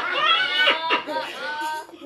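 A high-pitched squealing voice among speech, sliding up and down in pitch and ending in a couple of held high notes.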